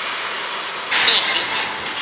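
Anime fight-scene soundtrack: a rushing noise that surges loudly about a second in, with a character's voice.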